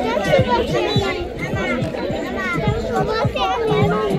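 Many voices, children's among them, talking and calling over one another.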